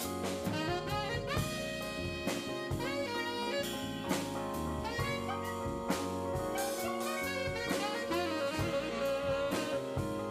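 Live band in an instrumental break: a tenor saxophone solos with bending, held notes over a drum kit keeping time with cymbals, and electric bass.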